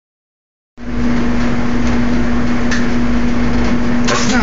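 Top-loading washing machine filling with water: a steady rush of water with a constant hum.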